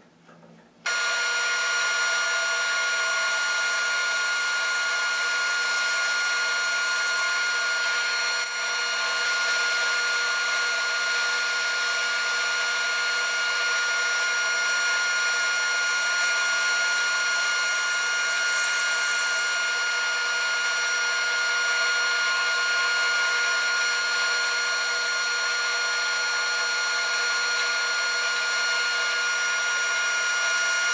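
Band saw starting up abruptly about a second in, then running steadily as it slices angled sections from a small firewood log fed on a sliding carriage.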